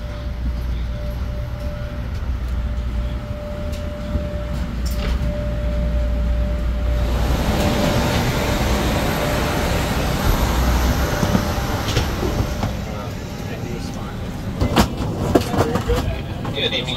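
Low steady rumble and hum with a thin steady tone in a jet bridge. About seven seconds in, a rushing hiss of air takes over at the Airbus A319's door and fades after several seconds, with a few sharp clicks near the end.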